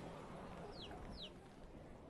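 Faint background ambience fading out, with two short high chirps from a bird, each falling in pitch, about a second in.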